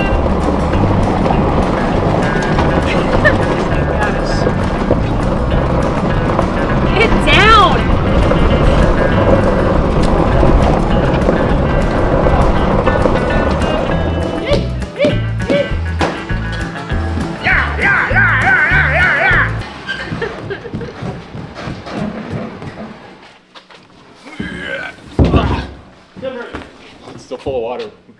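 Background music with a steady beat and a singing voice, ending about 20 seconds in, followed by a few brief knocks and a loud thump.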